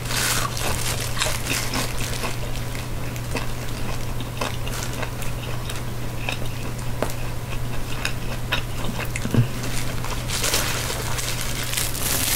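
Close-up chewing of a crunchy deep-fried spring roll (lumpia): a bite, then a run of small crisp crackles as it is chewed, over a steady low hum. A short, louder crackle comes about ten seconds in.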